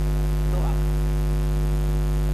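Steady electrical mains hum in the recording: a low, unchanging hum with a ladder of higher overtones, under one faint spoken word about half a second in.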